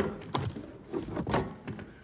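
An assault rifle being laid down on a wooden table, with a handful of sharp metallic clicks and knocks as it is set down and let go.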